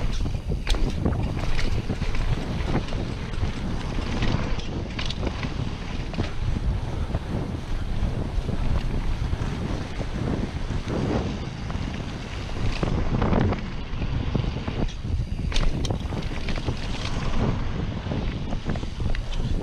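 Wind rushing over a chest-mounted action camera's microphone during a fast mountain bike descent, as a low steady rumble, with the tyres running over packed dirt and frequent short clicks and rattles from the Trek Slash full-suspension bike jolting over bumps.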